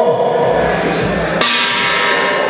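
Boxing ring bell struck once about one and a half seconds in and left ringing, signalling the start of the round, over the hall's background noise.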